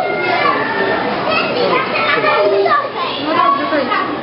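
Many children's voices shouting and chattering at once as they play, a loud, continuous babble.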